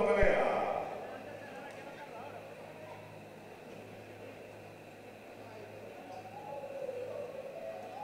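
Faint boxing-arena ambience: a low steady electrical hum under indistinct distant voices that grow slightly louder near the end.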